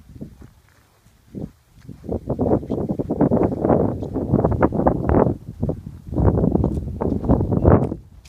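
Footsteps through grass close to the microphone, a dense irregular crunching and rustling from about two seconds in, with a brief lull midway.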